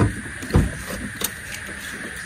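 A car door being unlatched by its outside handle and swung open: two low thumps and then a short click.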